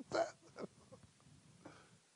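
A man's short breathy chuckle: one louder catch of voice at the start, then two faint ones, over quiet room tone.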